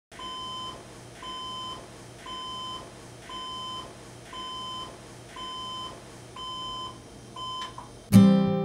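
Digital alarm clock going off, a steady electronic beep repeating about once a second, eight beeps in all. The last beep is cut short near the end.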